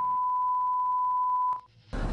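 A steady, single-pitch test-tone beep, the reference tone that goes with TV colour bars. It holds for about a second and a half, then cuts off suddenly.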